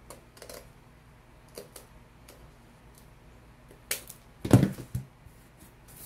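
Handling noises on a worktable: scattered light clicks, then a sharp click and a heavy thump about four and a half seconds in, with a smaller knock just after, as a small square artboard panel is set down on a cutting mat.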